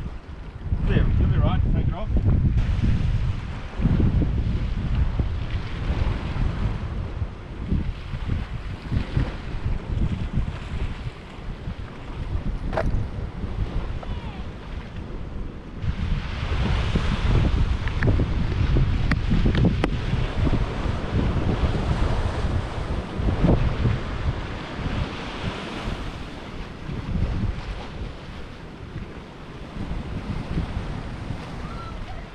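Wind buffeting the microphone in uneven gusts over the wash of sea surf breaking on rocks, the surf louder from about halfway through.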